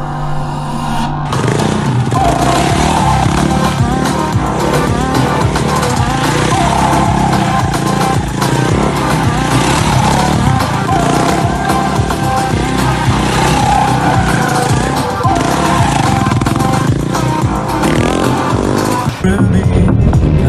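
Backing music with a supermoto motorcycle's engine running beneath it. The sound changes briefly just before the end.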